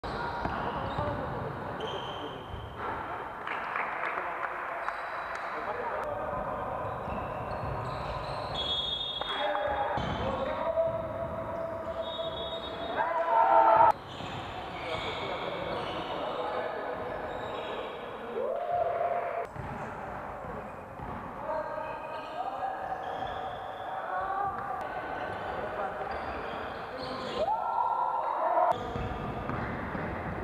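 Basketball game sound: a ball bouncing on a gym floor with players' voices and shouts, in short clips that cut from one to the next.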